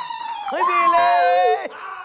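Long held vocal notes with a slight waver: a high sung note tapering off, then a second note that rises about half a second in, is held, and cuts off shortly before the end.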